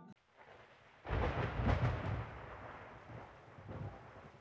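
A deep rumble like thunder that starts suddenly about a second in and dies away over a couple of seconds, with a smaller swell near the end.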